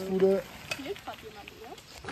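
Speech: a short spoken word at the start, then faint talk in the background.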